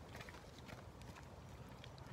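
Faint footsteps of a person walking on a park path, over a low steady rumble.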